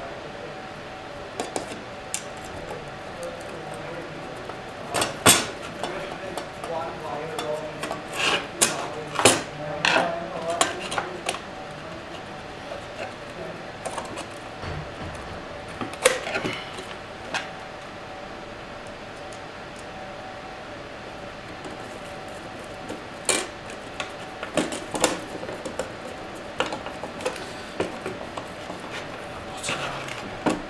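Metal case panels and screws of a mains inverter being handled and fitted together: scattered metallic clicks and clinks, in clusters about five to eleven seconds in and again from about twenty-three seconds on, over a faint steady hum.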